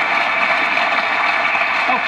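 Studio audience applauding, a steady dense clatter of many hands clapping, heard through a television's speaker.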